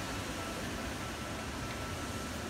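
Steady background hiss of an indoor exhibition hall, with a faint thin high steady tone running through it.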